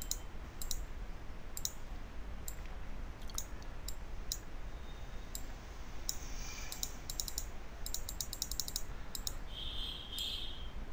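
Computer mouse clicking: single clicks about once a second, then a quick run of clicks about seven to eight and a half seconds in.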